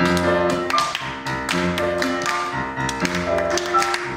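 Grand piano playing a rhythmic interlude, with many sharp taps of shoes on a wooden stage floor as the singer dances.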